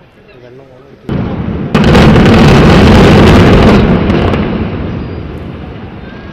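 Controlled implosion of a high-rise apartment tower. A sudden blast comes about a second in, then a dense run of explosive charges with the loud rumble of the collapse, which fades away over the last two seconds.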